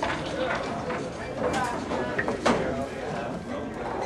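Background chatter of a busy pool hall, with a few sharp clacks of billiard balls striking. The loudest clack comes about two and a half seconds in.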